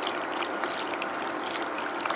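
A silicone spatula stirring penne in a thick cream sauce in a large aluminium pot: a steady wet, sloshing noise with a few faint ticks.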